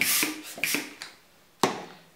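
Hand balloon pump pushing air into a 260 twisting balloon: a few short airy strokes that die away within the first second. About a second and a half in, one sharp click.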